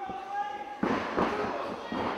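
A wrestler's body hitting the ring canvas with a sudden thud about a second in, followed by crowd noise in a large hall.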